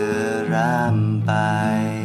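A man singing a slow Thai love song in long held notes, the pitch wavering on a sustained note, over acoustic guitar accompaniment.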